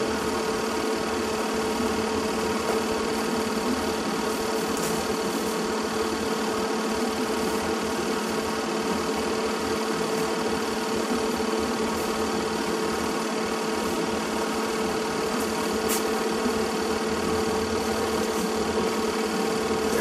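Home-movie film projector running with a steady whirring hum and a constant mid-pitched tone.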